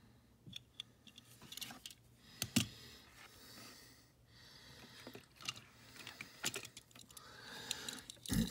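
Light clicks and clinks of small 1:64 die-cast metal toy cars being handled, set down and picked up from a pile, with a few scattered knocks; the sharpest comes about two and a half seconds in.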